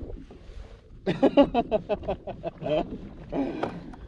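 A man's voice talking, starting about a second in and running until just before the end, after a brief lull with only low background noise.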